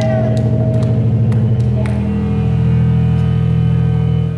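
Live metal band playing loud distorted electric guitars and bass, holding low droning chords. The chord steps down in pitch about a second and a half in.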